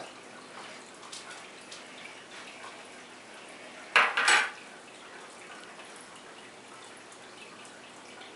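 A metal slotted spatula clattering down onto a wooden table about four seconds in: two quick, sharp knocks. Faint small clicks of handling are heard around it.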